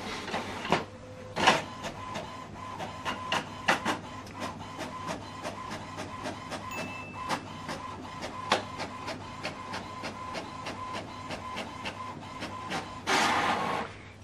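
HP Smart Tank 7605 inkjet printer printing a double-sided job: a steady motor whine with rapid, even clicking, and a few louder knocks early on. A louder whirr comes near the end as the printed sheet is fed out into the tray.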